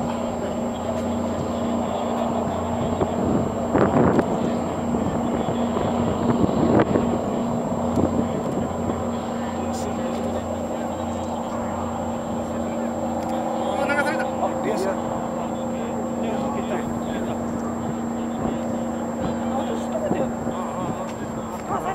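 Steady low engine hum, with people's voices talking now and then over it, loudest about four and seven seconds in.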